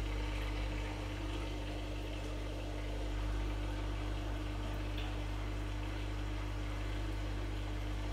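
Steady low hum of running equipment with a constant tone, unchanging throughout.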